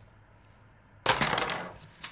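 Two clothespins pulled off a cardboard face and dropped, in a sudden short clatter about a second in that dies away quickly.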